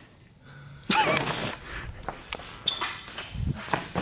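Footsteps and scattered handling and movement noises, with a short voice sound about a second in and a low thump near the end.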